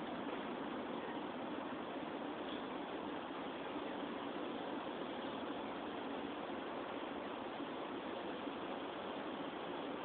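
Steady, even hiss of outdoor background noise, with no shots, impacts or other distinct events.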